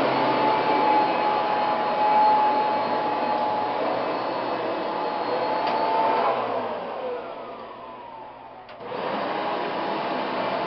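Hoover TurboPower upright vacuum cleaner running with a steady motor whine. About six seconds in it is switched off, and the whine falls away as the motor spins down. Near the end there is a click and a vacuum motor comes on again with a steady whir.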